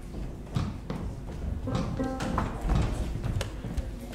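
Scattered knocks and taps from a rock band's instruments and stage gear being handled between songs, with a short single instrument note about two seconds in.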